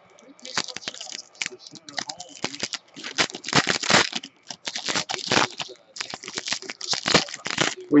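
Foil wrapper of a trading-card pack being torn open and crinkled in the hands: a run of irregular crackles over several seconds.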